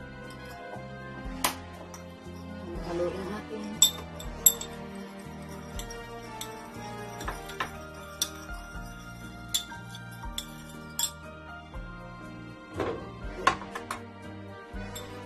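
A metal spoon clinking irregularly against a small bowl while stirring a fish-sauce dressing, about a dozen sharp clinks over steady background music.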